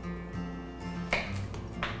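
Background music with steady held tones, and a kitchen knife chopping through cucumber onto a cutting board twice: once about a second in and again near the end.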